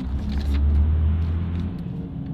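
Low, steady drone of a car heard from inside the cabin, engine and road noise, which cuts off about three-quarters of the way through, leaving a faint steady hum.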